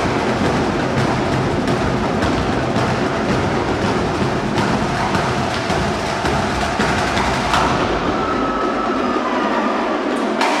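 A drum corps' drumline playing a loud, dense percussion cadence. The deep drums drop out about eight seconds in, leaving the higher drums.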